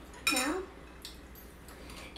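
A few faint clinks of metal forks against small white ceramic serving bowls, about a second in and again near the end.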